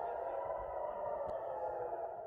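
An air-raid siren sounding as a steady, sustained tone, thin and muffled as picked up by a phone's microphone.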